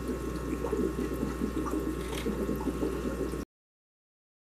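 Aquarium water sloshing and gurgling as a hand moves flat rocks about underwater, over a steady low hum. The sound cuts off suddenly about three and a half seconds in.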